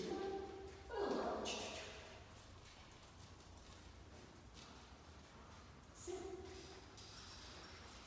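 Brief, indistinct spoken words at a low level, heard about a second in and again near six seconds, with quiet room tone between them.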